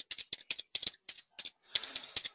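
Computer keyboard typing: a quick, uneven run of about a dozen keystrokes in two seconds.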